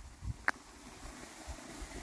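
Quiet outdoor ambience with low, uneven wind rumble on the microphone, and a single sharp click about half a second in.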